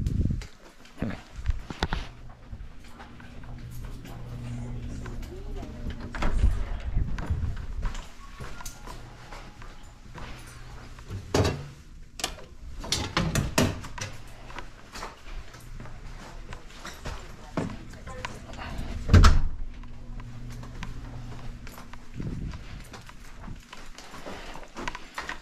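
Walking and handling noises at a home breaker panel: its metal door is opened and a tripped circuit breaker is switched back on, with scattered knocks and clicks and one loudest knock late on. A steady low hum runs underneath.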